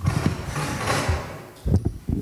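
Handling noise of a handheld microphone being passed and gripped: a loud rustling scrape with low knocks, then a few softer bumps near the end.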